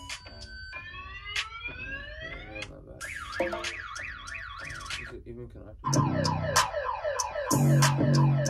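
A car-alarm beat: car-alarm pulsing beeps, then a long rising whoop, then a fast up-and-down warble. About six seconds in, a loud beat with heavy bass comes in under the alarm tones.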